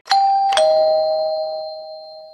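Two-note descending 'ding-dong' doorbell chime sound effect. The second, lower note strikes about half a second after the first, and both ring on and fade away slowly.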